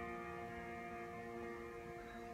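The accompaniment's final chord ringing out after the song's last line, a steady sustained chord slowly fading away.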